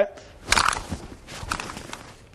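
The scuffle of a fast handgun disarm: a sharp rustle of clothing and movement on the mat about half a second in, followed by a few lighter scuffs.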